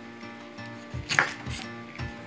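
Kitchen knife cutting drumstick (moringa) pods on a wooden cutting board: a couple of sharp chops of the blade onto the board, the loudest about a second in.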